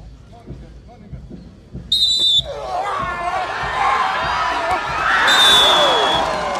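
A referee's whistle sounds one short, sharp blast about two seconds in. A crowd at once breaks into shouting and cheering that grows louder, and a second, longer whistle blast comes near the end as the cheering peaks.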